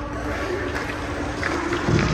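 Ice rink ambience: a steady hum and hiss with a few faint clicks, then a louder scrape near the end, as of a skate blade cutting the ice close by.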